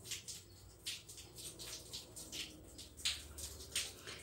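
Faint, irregular clicks and ticks of small pearl beads being picked up and slid onto a beading needle and nylon line.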